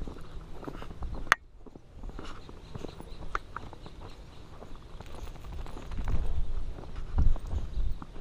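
Footsteps in fresh snow from a person and two leashed dogs walking, with scattered small clicks and one sharp click a little over a second in. A low rumble swells near the end.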